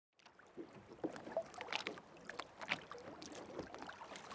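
Sea water lapping and slapping against the hull of a small rowboat, with irregular splashes over a wash of open-water ambience, fading in from silence just after the start.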